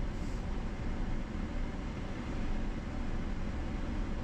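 Steady low rumble of a Chevrolet Silverado pickup driving along a gravel road, heard from inside the cab: engine and tyre noise with no sudden events.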